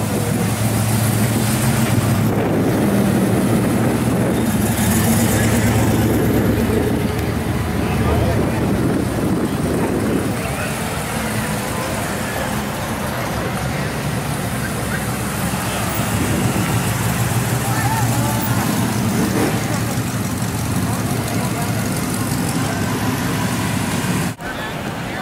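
Cars rolling slowly past one after another, their engines running at low speed. The engine sound swells during the first several seconds and again later on, with people talking in the background.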